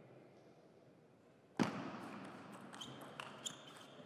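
Table tennis ball being played in a short rally: a sharp click about one and a half seconds in, the loudest, then a few lighter clicks as the ball strikes paddles and the table, echoing slightly in a large hall.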